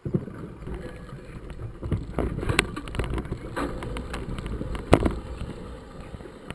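Mountain bike riding over a narrow dirt trail: a steady rumble of tyres on the ground and wind on the microphone, with scattered rattling knocks from the bike jolting over bumps, the sharpest about five seconds in.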